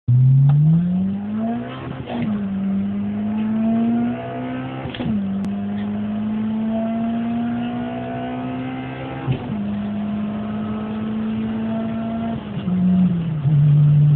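Honda Type R four-cylinder engine at full throttle, heard inside the cabin. Its note rises through each gear and drops sharply at upshifts about 2, 5 and 9½ seconds in. Near the end it holds roughly steady, then falls in two steps as the revs come down.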